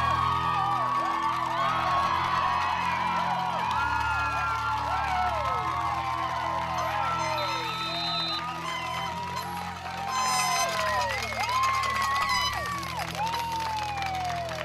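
Football crowd cheering and whooping at a long run, many overlapping shouts rising and falling, swelling again about ten seconds in, with music playing underneath.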